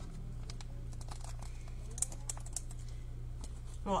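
Scattered light clicks and taps at an irregular pace over a steady low hum.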